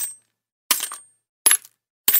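Coins dropping one at a time: three sharp metallic clinks, each ringing briefly, under a second apart, with silence between.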